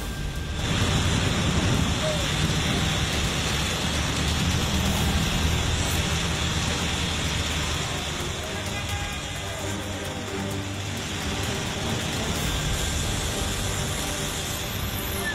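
Steady low rumble with a hiss over it: a city bus engine and street traffic.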